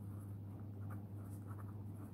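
A pen writing on paper: faint, scattered scratching strokes over a steady low hum.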